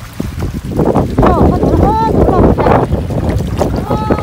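A live fish thrashing in a plastic bucket of water, sending up a rapid run of splashes that starts about a second in and lasts a couple of seconds.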